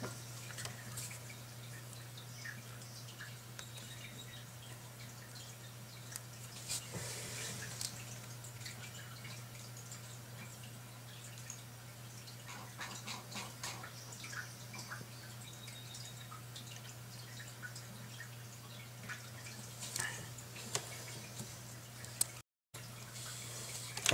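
Faint steady electrical hum with scattered small clicks and taps from handling the circuit boards, capacitor and soldering tools. The sound drops out briefly near the end.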